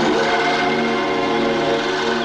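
Orchestral film score music holding a sustained chord of many notes, steady and without a beat.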